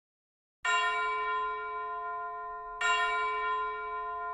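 Two strikes of a bell-like chime, each starting suddenly and ringing on as it slowly fades, the second about two seconds after the first.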